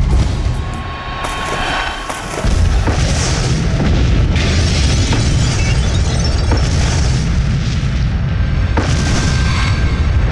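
Explosion of a wooden fishing boat loaded with oil drums: a sudden deep boom about two and a half seconds in, then a continuous heavy low rumble as it burns, with music underneath.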